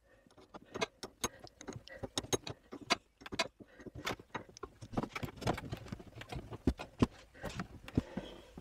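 Irregular small clicks and light metallic taps as a threaded handbrake cable adjuster on a Volvo XC90 is turned by hand, screwed in until the groove for its clip shows.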